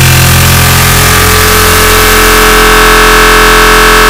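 Extremely loud, clipped digital noise with many steady droning tones, a laugh sample stacked and distorted by repeated audio effects until it no longer sounds like a laugh.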